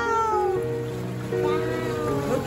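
A drawn-out exclaiming voice falling slowly in pitch, like a long "wooow", that fades out about half a second in, with another short call near the end, over background music with sustained notes.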